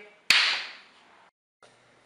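A single sharp crack about a third of a second in, with a bright hiss that fades out over about a second.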